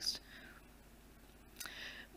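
Near silence in a pause between sentences, with a soft breath drawn in near the end.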